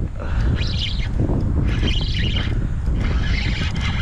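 Spinning reel working against a hooked fish in three short bursts of high, chirping buzz, over heavy wind rumble on the microphone.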